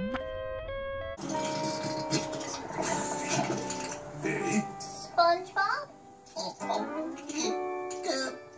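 Two cartoon characters wailing together in a held cry for about the first second, then a sudden cut to cartoon soundtrack played from a television: background music with character voices breaking in now and then.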